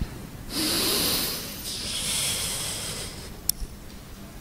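A Quran reciter drawing a deep breath close to the microphone in two long airy pulls, taking in air before a long sung phrase of tilawah. A short click follows near the end.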